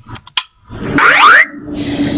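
A cartoon-style rising swoop sound effect of about a second, the kind that accompanies a slide transition in an animated presentation, preceded by a few short clicks.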